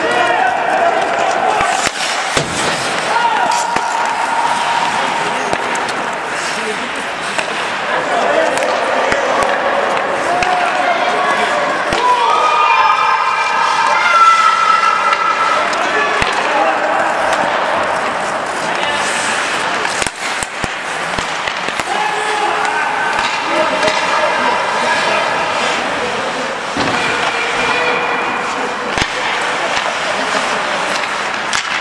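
Ice hockey in play: skates scraping the ice, sticks and puck clacking, and knocks against the boards, with players shouting to each other, loudest about halfway through.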